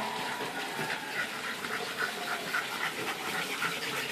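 English bulldog panting hard with snorting breaths, a quick rhythm of about two to three breaths a second.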